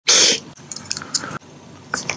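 Close mouth and gum-packet sounds around Marukawa Felix bubble gum: a short, loud breathy burst at the very start, then faint scattered clicks and crinkles as the gum is handled and put in the mouth.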